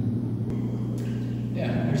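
Steady low electric hum of the pond's running pump equipment, a canister filter and an aeration air pump. The hum keeps one pitch throughout.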